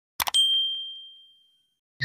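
Two quick mouse-click sound effects, then a single bright notification-bell ding that rings out and fades away over about a second, as the bell icon of a subscribe button is clicked.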